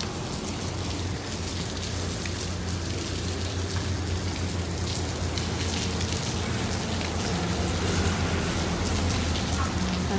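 Heavy rain falling steadily outside an open window, with a low steady rumble underneath.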